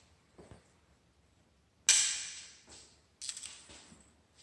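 A sliding glass patio door being slid and shut: a sudden knock about two seconds in that fades over most of a second, then a quicker clatter of clicks a second later.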